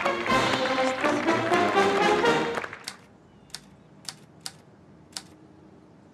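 Brass band music that cuts off about halfway through, followed by about five separate keystrokes on a manual typewriter, struck slowly and unevenly.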